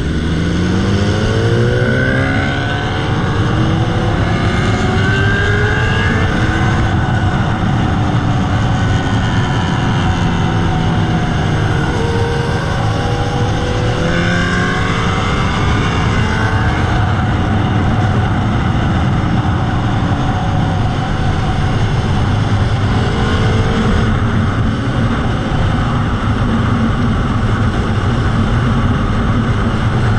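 Motorcycle engine running under way, its pitch rising several times as it accelerates through the gears, over a steady rush of wind and road noise.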